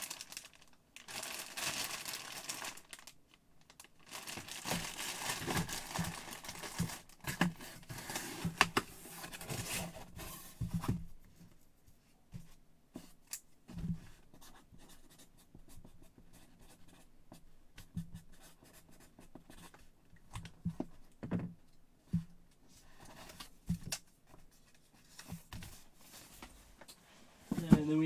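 Clear plastic jersey bag crinkling and rustling for about ten seconds as it is handled. After that come quieter, scattered light taps and scratches of a marker writing.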